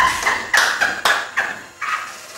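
A woman laughing loudly in a string of about five sharp bursts, a second or so of cackling laughter.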